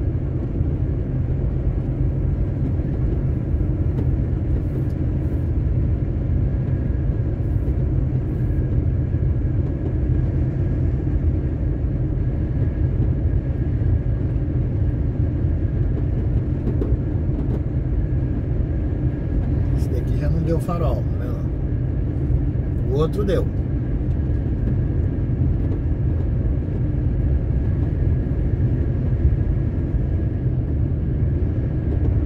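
A truck's diesel engine running steadily with heavy road rumble, heard from inside the cab while driving. Two brief higher, gliding sounds come about two-thirds of the way through.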